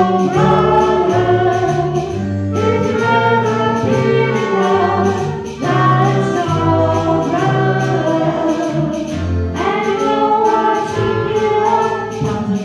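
A small live band: several voices sing together over strummed acoustic guitars, with a moving bass line underneath.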